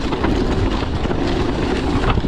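Steady rush of wind over the microphone mixed with the rumble and rattle of a mountain bike's tyres and frame running fast down a dry dirt trail.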